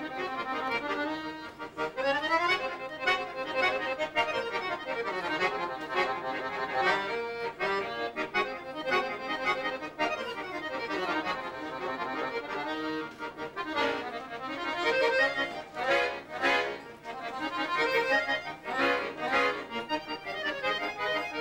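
Piano accordion played solo in a fast, busy passage: quick runs of right-hand notes over the bass, with a rapid rising run about two seconds in and short, sharp chords in the second half.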